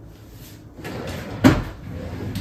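A single solid thump about one and a half seconds in, after a short scraping rustle.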